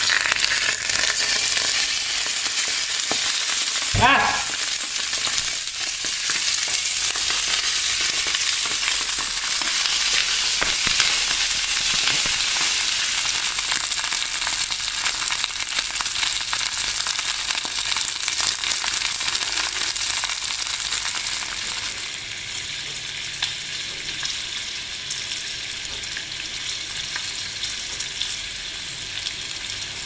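Thick raw sausages sizzling loudly in hot oil in a nonstick frying pan, freshly laid in. A short rising squeak sounds about four seconds in, and the sizzle settles to a lower level about two-thirds of the way through.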